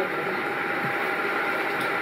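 Steady room noise with a faint, even hum.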